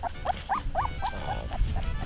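Young Greater Swiss Mountain Dog puppies whimpering: about five short, squeaky calls, each rising and falling in pitch, roughly four a second, ending a little after a second in.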